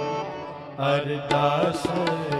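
Sikh shabad kirtan: harmonium held tones with tabla strokes, and singing voices coming in about a second in.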